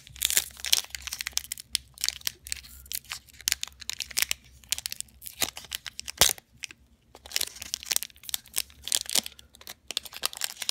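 Foil Pokémon booster pack wrapper crinkling and crackling as it is handled and torn open, in irregular bursts with a short pause about two-thirds of the way through.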